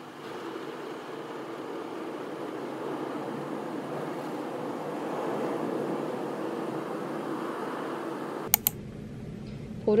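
Automatic car wash running, heard from inside the car's cabin: a steady rushing of water spray and air blowers that swells over the first few seconds. It cuts off suddenly with a couple of sharp clicks about eight and a half seconds in.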